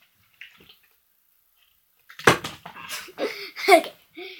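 Duvet and bedclothes rustling, starting with a knock about halfway through, then a boy's short laugh near the end.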